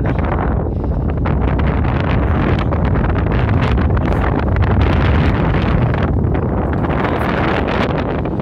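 Strong wind buffeting the microphone: a loud, gusty rumble that swells around the middle.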